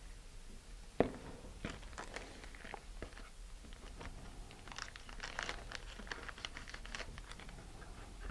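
Faint crinkling and rustling of clear tape and paper being handled on a plastic nose cone, with a sharp tick about a second in and a denser run of crinkles from about five to seven seconds in.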